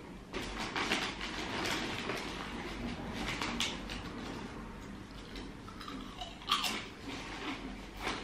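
Someone chewing crunchy potato crisps, with the crinkle of the crisp bag as a hand reaches into it. The crunching and rustling come in irregular bursts, busiest in the first two seconds.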